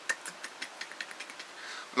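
A pause in speech: faint, irregular small clicks over room tone, with a soft breath-like hiss rising near the end.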